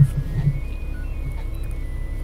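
Doosan 4.5-ton forklift's engine running with a steady low hum, heard from inside the cab as it creeps along carrying a bundle of rebar. Faint background music lies over it.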